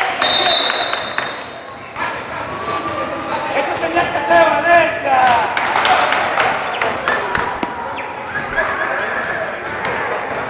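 A long, steady referee's whistle blast just after the start, then players' voices talking and shouting over basketballs bouncing on the hard court, all in a reverberant sports hall.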